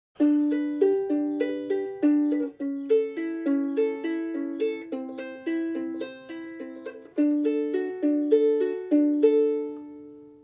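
Ukulele fingerpicked with thumb and fingers: a repeating eight-note pattern of single plucked notes on the C, A and E strings, played over the chords G, A7, C and D, with the last notes left ringing near the end.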